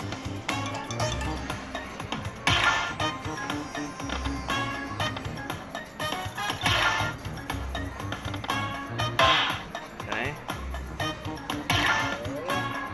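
Aristocrat Lightning Cash slot machine's bonus-round music, a steady rhythmic loop with bright chiming bursts about every three to four seconds as the free spins play out.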